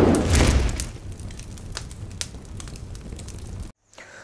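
A burst of flame whooshing up, then fire rumbling with scattered crackles, cutting off suddenly near the end.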